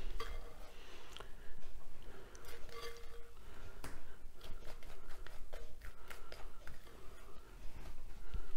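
Soft, wet plops of thick almond filling dropping from a glass mixing bowl onto a pastry-lined baking tray, with a utensil scraping and lightly clicking against the glass.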